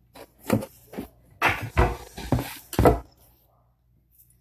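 Handling noise from a phone camera being adjusted close up: a run of about seven short bumps, knocks and rustles that stops about three seconds in.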